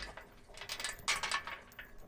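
Quarter-inch zinc grade 30 steel chain clinking lightly as it is handled: a scatter of faint metallic clicks, several close together about a second in.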